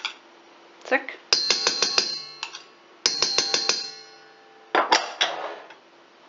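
Stainless steel mixing bowl tapped rapidly at its rim as quark is knocked off into it: two quick runs of about five taps each, a second apart, with the bowl ringing on in a clear metallic tone after each run.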